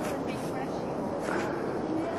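Steady rushing outdoor noise at an even level throughout, with no distinct events.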